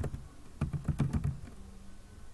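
Typing on a computer keyboard: a quick run of keystrokes that stops after about a second and a half.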